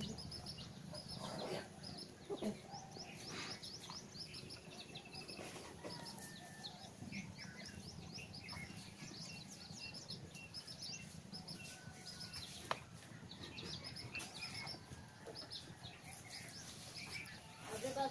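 Small birds chirping over and over, with a single sharp click a little past the middle.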